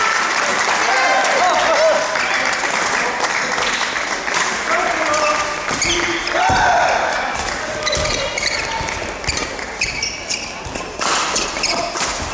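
Badminton doubles rally: rackets striking the shuttlecock in quick exchanges, with short shoe squeaks on the court floor, over a steady din of voices in a large hall.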